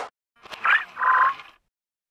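Cartoon robot's electronic voice: a short rising chirp, then a held buzzy tone about a second in, the robot 'talking' in bleeps.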